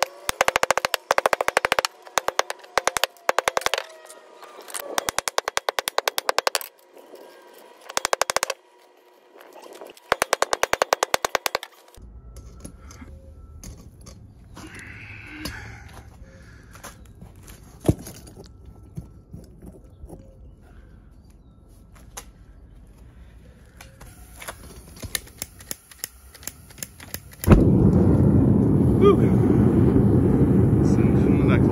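Hammer beating scrap copper pipe fittings on concrete in bursts of rapid metallic blows over the first twelve seconds, then a quieter stretch of handling knocks. Near the end the gas burner of a melting furnace lights with a sudden loud rush and keeps running steadily.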